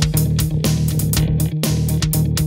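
Live band playing an instrumental passage: electric bass holding a steady low line and electric guitar over a steady beat, with no singing.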